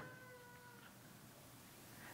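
Near silence: room tone, with a faint steady tone that fades out within the first second.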